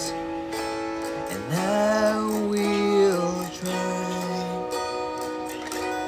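Acoustic guitar music plays steadily, with a man's voice rising into a long held note between about one and a half and three and a half seconds in, without clear words.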